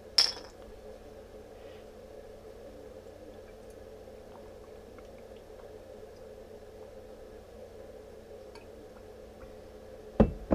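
A sharp clink from a glass water bottle just after the start. Then water is drunk from the bottle, heard as faint soft drinking sounds over a low steady hum.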